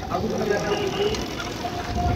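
An indistinct voice over steady outdoor background noise.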